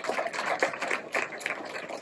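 Audience applause: many hands clapping in quick, irregular claps, thinning slightly towards the end.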